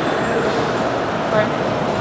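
Steady road traffic noise from cars passing and waiting along the curb, with indistinct voices over it.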